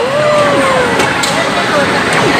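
Arcade din: game machines' electronic sounds with many short sliding tones over a steady background of noise and voices, with one long tone that rises and then slowly falls across the first second.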